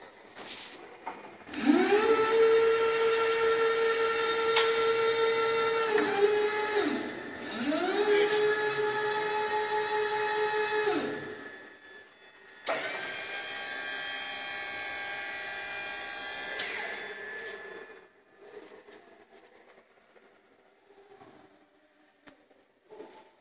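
Jungheinrich EKS 110 order picker's electric hydraulic lift motor whining as it raises the operator platform. It rises in pitch as it spins up, runs in two stretches with a short pause about six seconds in, and stops around eleven seconds. A second steady, higher whine follows from about thirteen to seventeen seconds as the platform comes back down.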